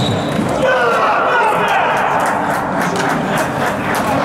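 Men's voices shouting and calling in a large echoing sports hall during a futsal match, with a sharp knock of a ball strike near the start.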